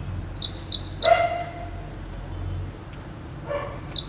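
Ashy prinia singing: three sharp, high notes about a third of a second apart. Right after them comes a lower, drawn-out animal call lasting about a second, and a short one of the same kind near the end.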